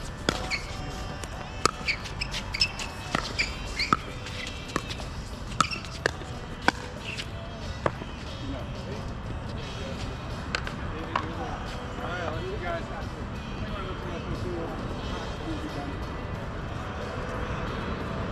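Pickleball rally: paddles striking the plastic ball in a quick, irregular string of sharp pops, which stop about eight seconds in when the rally ends. A couple of lone clicks follow, then faint voices.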